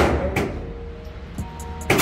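Handgun shots in an indoor shooting range, each ringing off the hall. One loud shot comes at the start, a lighter one about half a second later, and another loud one near the end.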